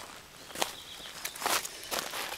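Irregular rustling and crunching scuffs, with louder ones about half a second in and about a second and a half in, among smaller clicks.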